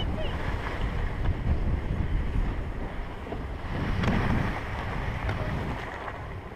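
Wind buffeting the microphone while skis slide and scrape over packed piste snow, the skier picking up speed. The noise grows louder about four seconds in.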